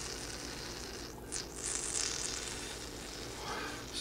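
Water sizzling and boiling on a stainless steel plate heated from below by a nine-tip HHO (oxyhydrogen) burner. A steady sizzle that swells briefly about a second in, over a low steady hum.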